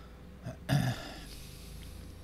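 A man's short, throaty non-speech vocal sound, a single burst just under a second in, over a faint steady hum.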